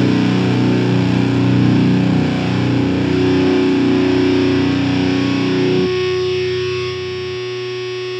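Heavy metal band playing with heavily distorted electric guitars. About six seconds in the full band stops and a final chord is left ringing steadily, its lowest notes dropping away near the end.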